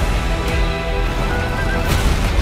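Dramatic trailer music over a deep rumble, with booming hits at the start and about half a second in, and a horse neighing. A cannon boom comes near the end.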